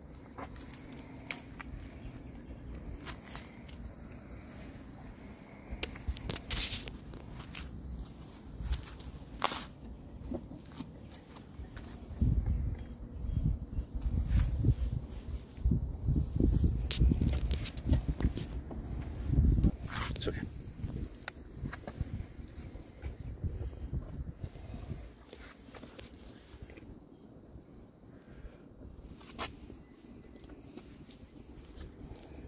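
Footsteps and small clicks of a handheld phone being carried around a parked car, with gusty low rumbling buffeting the microphone for several seconds midway.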